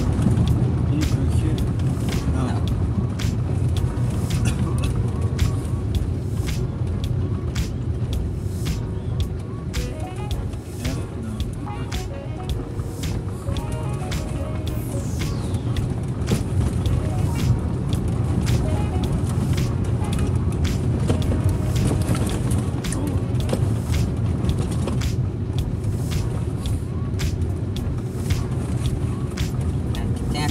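In-cabin road noise of a small car, a Fiat Uno Mille, driving slowly over a cobbled paving-stone street. It is a steady low rumble from the tyres and engine, with frequent short knocks and rattles as the wheels cross the uneven stones.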